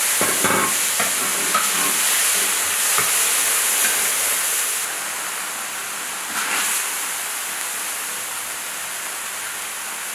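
Steady sizzling hiss from a hot wok of soybean-braised chicken being dished out, with a few light knocks of the utensil. The sizzle eases a little about halfway through.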